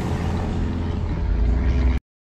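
Steady low engine and road rumble heard inside the cabin of a Smart car on the move. It cuts off suddenly at the end.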